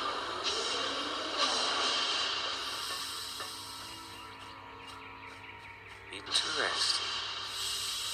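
Film soundtrack playing: background music with held tones under a hissing, whooshing sound effect, growing quieter through the middle and rising again near the end.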